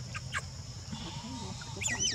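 Baby macaque squeaking: a few short, high, falling squeaks just after the start, then a quick run of higher squeals near the end.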